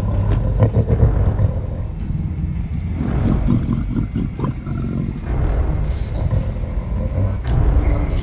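Film soundtrack: a monster's deep roaring and growling over a heavy low rumble.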